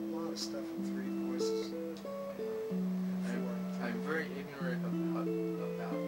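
Solid-body electric guitar played in a Baroque-style improvisation: held chords over a bass line that steps downward, a new bass note about every two seconds, with inner and upper voices moving above it.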